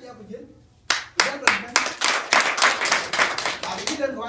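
A group of people clapping, starting sharply about a second in and carrying on as a quick, uneven run of claps.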